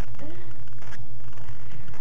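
A steady low electrical hum, with a short wavering voice-like call lasting about a third of a second near the start.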